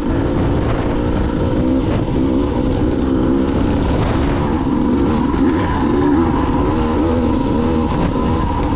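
Two-stroke enduro motorcycle engine running at low speed on a rough stony track, its pitch wavering up and down with the throttle.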